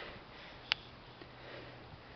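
Low background noise with a person sniffing close to the microphone, and one sharp click about a third of the way in.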